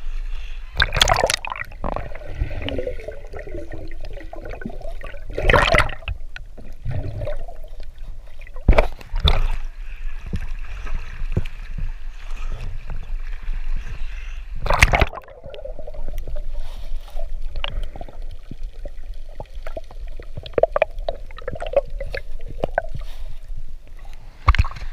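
Water sloshing and gurgling around a camera held at the water's surface, with loud splashes about a second in, near six seconds, around nine seconds and near fifteen seconds.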